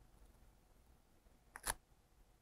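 Near silence, broken near the end by one brief crinkly click of a disposable diaper being fastened.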